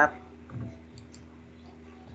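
A few faint clicks about a second in, over a steady low hum, with the tail of a man's spoken word at the very start.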